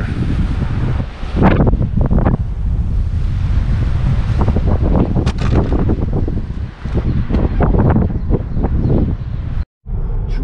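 Wind buffeting the camera's microphone: a loud, uneven rumble rising and falling in gusts, with a brief break to silence just before the end.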